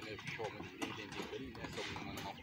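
Background voices of several people talking at a distance, not close to the microphone, with a few light knocks or clatters among them.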